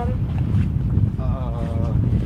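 Steady low rumble of wind buffeting the microphone of a handheld outdoor camera.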